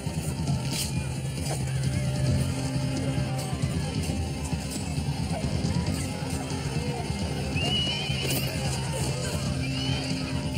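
Dramatic film score with a held low note throughout, under battle noise: men shouting and a few sharp impacts, with cries near the end.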